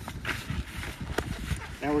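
Cardboard being handled and pressed down onto soil by hand: irregular rustling with a few soft taps.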